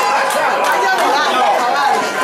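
Excited voices, several people shouting and talking over one another.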